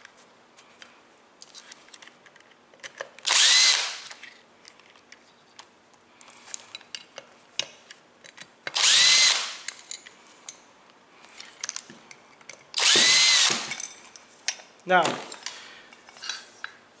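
Power drill used as a screwdriver, backing screws out of the metal end plate of an ignition control box. It gives three short runs of under a second each, the motor whine rising and falling. Light clicks of screws and handling fall between the runs.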